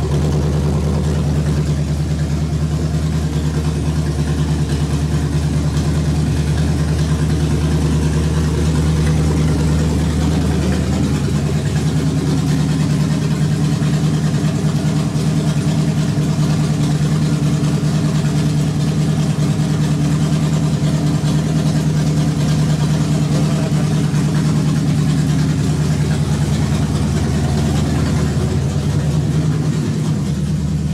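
Chevrolet 327 small-block V8 with an Edelbrock carburetor idling steadily, its note shifting slightly about eleven seconds in.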